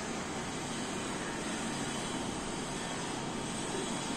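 Steady, even background noise with no words and no distinct events.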